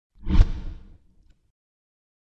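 Logo-intro whoosh sound effect: a quick swelling rush that ends in a sharp hit about half a second in, then dies away within the first second and a half.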